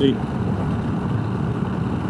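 Honda Rebel 1100 DCT's parallel-twin engine running steadily at highway speed of about 75 mph, mixed with wind and road noise, heard from the rider's seat.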